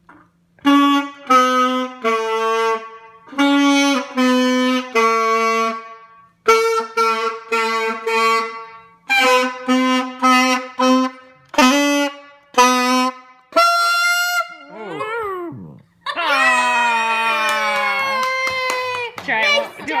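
Saxophone playing a simple tune in short, separate notes. Near the end come a wavering high note, a wobbling downward slide and a long held note.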